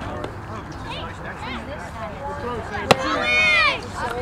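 Youth baseball: a background of children's chatter, then about three seconds in a single sharp smack of a baseball impact, followed at once by a loud, high-pitched shout lasting under a second.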